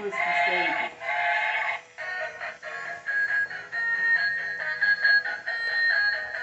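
Musical Bump 'n' Go Bubble Train toy's speaker playing a tinny electronic tune. A noisier, denser sound comes first, then from about two seconds in a melody of short, steady notes.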